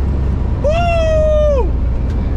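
A man's long "woo!" cheer, held about a second, rising at the start and falling away at the end, over the steady low drone of the car inside its cabin.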